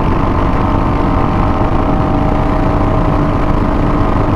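Royal Enfield Hunter 350's single-cylinder engine running at steady high revs at close to 100 km/h, its pitch holding level, under a constant rush of wind and road noise.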